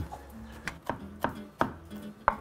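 Chef's knife chopping fresh basil leaves on a wooden cutting board, a series of quick knocks about three a second.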